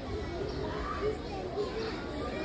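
Indistinct chatter of several children's voices at once, no one voice standing out.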